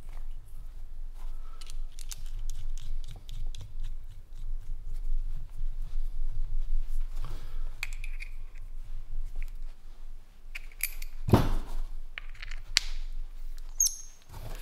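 Small metal clicks and ticks as a brass lantern valve and a small hand tool are handled and worked together, with one louder knock about eleven seconds in and a couple of sharp clicks near the end, over a steady low hum.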